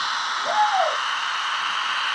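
Model electric locomotive running along the track, with a steady hiss from its motor and wheels. About half a second in, one short hoot rises and falls in pitch.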